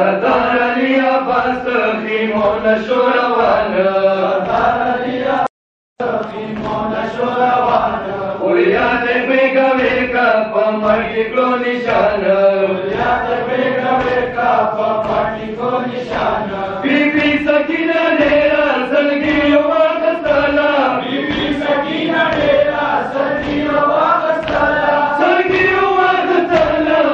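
Men's voices chanting a noha, a Shia mourning lament, in unison, with the steady beat of hands striking chests (matam) keeping time beneath it. The sound cuts out for a moment about five and a half seconds in.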